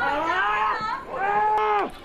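A person's voice yelling in two long, drawn-out cries, the second held steady and then falling away near the end.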